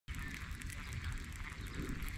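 Faint low wind rumble on the microphone, with light irregular ticking from a baitcasting reel being cranked.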